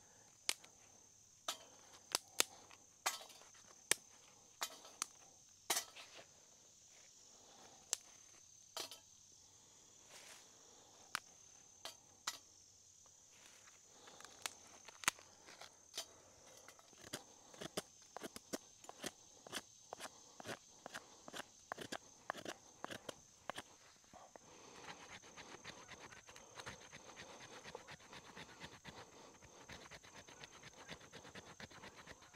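Scattered sharp clicks and knocks of gear being handled, then a quicker run of light knocks and, near the end, a steady rough rasping as a knife blade is worked down through a stick to split kindling. A steady high insect drone runs underneath.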